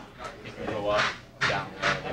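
Indistinct conversation among several people in a room, with no words clear enough to make out.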